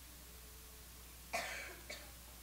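A single short cough about a second and a half in, over a steady low hum.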